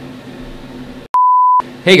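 A single steady, high-pitched electronic bleep tone, about half a second long, a little over a second in. The sound drops to dead silence on either side of it, the mark of a bleep edited into the track. Just before the end, a man starts saying "hey".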